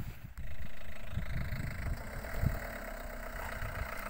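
A Renault Modus's engine running steadily at idle, with an irregular low rumble underneath.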